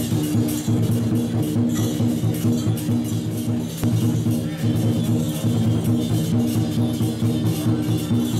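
Loud temple-procession music with a fast, steady beat of sharp percussive hits over sustained low tones.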